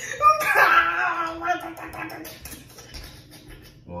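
A woman's drawn-out laughing cry in the first second and a half, followed by softer laughter.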